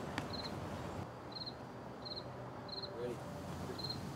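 A cricket chirping in short, high-pitched chirps about once or twice a second, over quiet outdoor background noise.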